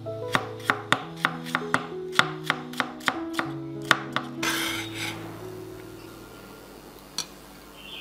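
Chef's knife slicing a shallot on a wooden cutting board, a crisp knock about three times a second, over soft background music with sustained notes. The slicing stops about halfway, followed by a brief hiss as the music carries on more quietly.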